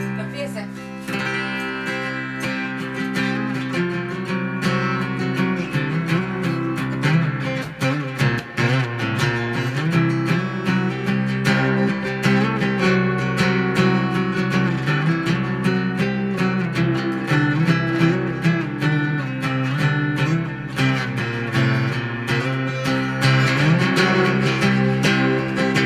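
Solo steel-string acoustic guitar played live in slide style. A low bass note rings steadily underneath while the melody notes glide and waver in pitch.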